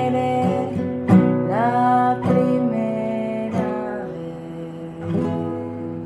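Acoustic guitar strumming a few separate chords that ring on, the last one fading out as the song ends.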